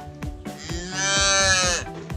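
A single long bawl from cattle, lasting about a second and dipping in pitch as it ends, over background music with a steady beat.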